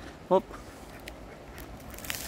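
Ducks and domestic geese on a river, with one short call about a third of a second in, over a faint steady hiss.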